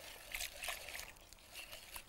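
Water trickling faintly from a jug into a bowl of flour and cornstarch, with soft swishes of a wire whisk stirring it into batter.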